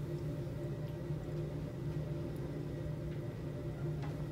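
Room tone: a steady low hum with no distinct events.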